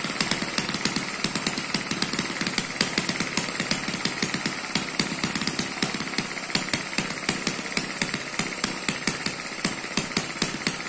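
Eachine ET8 single-cylinder four-stroke model engine running steadily, with no governor, firing on every cycle in a regular beat of about four pops a second.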